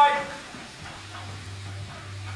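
A man's voice finishes a phrase at the start, then a quiet pause with faint hiss and a steady low hum that comes in about halfway through.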